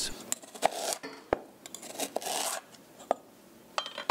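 Chef's knife slicing a ginger root into coins on a wooden cutting board: about eight sharp, irregularly spaced knocks as the blade strikes the board, with short scraping rasps as it cuts through the root.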